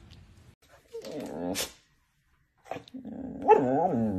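A dog making a long, drawn-out whining vocal sound near the end, its pitch rising and then falling, as it begs for food. A shorter pitched vocal sound comes about a second in.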